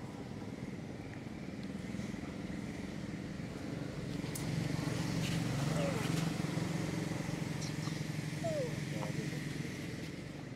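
A small motor vehicle engine running, swelling louder through the middle and then easing off, as a motorbike does when it passes.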